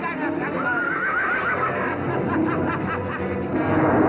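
Dramatic film-score music, with a high, wavering cry over it about a second in; the music swells louder near the end.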